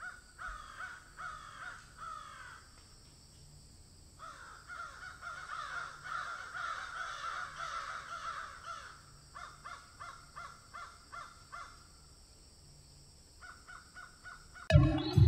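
Crows cawing: a few harsh, falling caws, then a long stretch of many overlapping caws, then a run of short caws at about three a second that dies away near the end.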